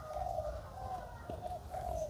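Faint birds calling in the background: a low call repeated several times with short gaps.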